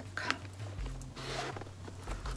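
Faint rustle of a phone case being slid into the back slip pocket of a caviar-leather Chanel clutch, loudest about a second in.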